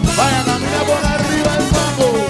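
Cuban timba band playing live: a loud, dense salsa groove of congas, timbales and drum kit, with a melody line sliding up and down in pitch above it.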